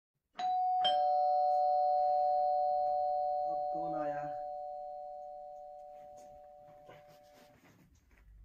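A two-tone ding-dong doorbell chime rings once: two notes struck about half a second apart, then ringing on and slowly fading over several seconds. Around the middle, a brief voice sound is heard under the fading chime.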